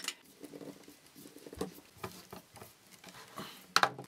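Small handling sounds of hardboard strips and small screws being fitted on a stencil frame on a tabletop: scattered light taps and scrapes, with one sharp click near the end.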